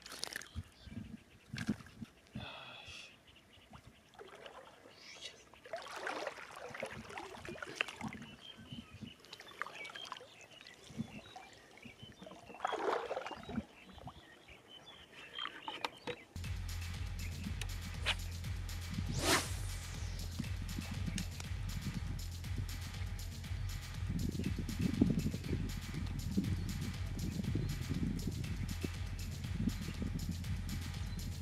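Water sloshing and splashing irregularly in a shallow, reedy pond. About halfway through, background music with a steady, even beat starts abruptly and takes over.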